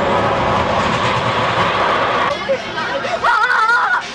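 Lazer steel looping roller coaster train running along its track with a loud, steady rumble that drops away a little over two seconds in. Near the end a high, wavering voice is heard.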